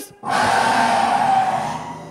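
Auto-rickshaw engine starting, a noisy rattling sound that comes in suddenly and fades away over about two seconds.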